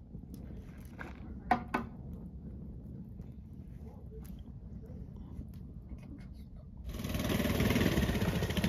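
Wood fire in a steel fire pit crackling, with two sharp pops about a second and a half in, over a low rumble. About seven seconds in, a minibike's small engine comes in much louder.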